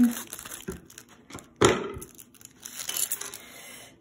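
Scissors cutting open a thin plastic Lego minifigure bag, with plastic crinkling and one sharp, loud crack about one and a half seconds in.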